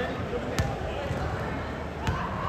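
A basketball bouncing once on a hardwood gym floor about half a second in, over echoing voices in the gym.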